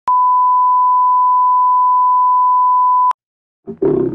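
A steady pure test tone, the standard line-up tone played with television colour bars, held for about three seconds and cutting off suddenly. A lower, noisier sound begins just before the end.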